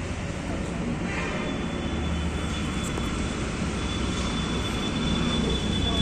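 Steady low hum and hiss of background noise in a large room, with a thin high whine joining about one and a half seconds in.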